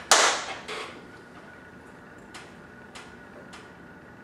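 A sharp hand slap of a high five just after the start, ringing briefly in the room, followed by a softer second slap; a few faint clicks come later.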